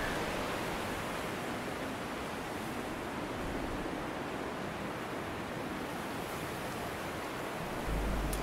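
A steady, even rushing noise, like wind or surf, with no music or singing.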